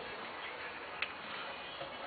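A single light click about a second in, from a hand handling a wooden cabinet with a glass panel, over steady background hiss.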